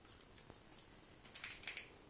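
Faint scratchy rustling of hair and plastic hair rollers being handled at the head, in a few short bursts, most of them about a second and a half in.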